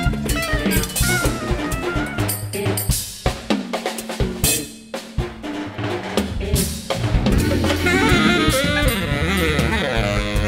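Live jazz trio of saxophone, drum kit and electric guitar, with the drum kit busy and to the fore, snare and bass drum under wavering melodic lines. The playing thins out for a moment near the middle, then fills out again.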